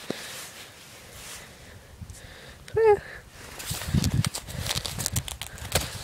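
A pony's hooves stepping on dry dirt: a run of irregular thuds and clicks through the second half, after a brief vocal sound.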